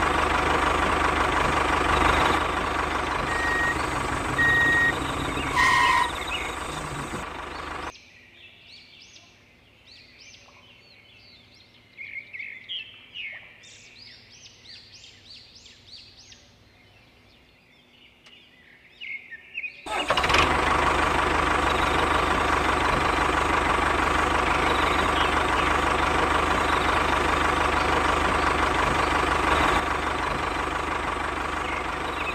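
A tractor engine running steadily. It cuts out about eight seconds in, leaving a quieter stretch with bird chirps, and starts again about twenty seconds in.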